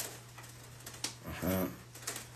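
A steady low electrical hum, then about halfway through a man's short wordless vocal sound, like a hesitation hum.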